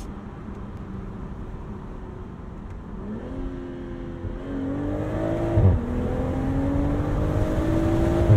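The 2023 BMW Z4 M40i's turbocharged inline-six accelerating, heard from the open cockpit with the top down. Low steady running at first, then the engine note climbs from about three seconds in. A quick upshift drops the pitch with a sharp exhaust bang just after halfway, and the revs climb again, louder, toward the end.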